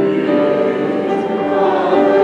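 A congregation singing a hymn together, at the start of a new verse.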